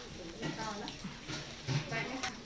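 Indistinct talking by several people close by, with a few light clicks or taps among the voices.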